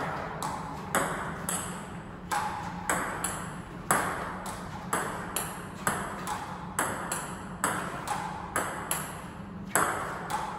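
Table tennis ball ticking in a steady rally, about two sharp clicks a second as it bounces on the table and is hit back with a small baseball bat. Each click rings briefly in the room.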